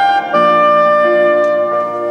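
Soprano saxophone playing a slow solo melody in a large stone church: a short note, then a long held note of about a second and a half, then a step to a new note near the end.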